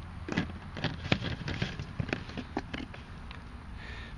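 Gamma Seal screw-on lid being turned down onto a plastic 5-gallon bucket: a run of quick, irregular plastic clicks and ticks, several a second.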